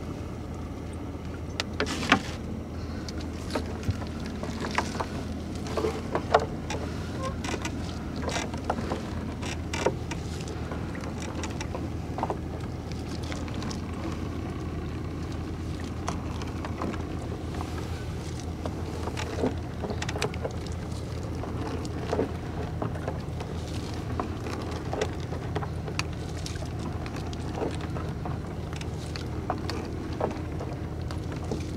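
A gill net being hauled by hand over the side of a wooden boat: irregular splashes, drips and knocks as wet net and floats come over the gunwale and land on the deck. A steady low motor hum runs underneath.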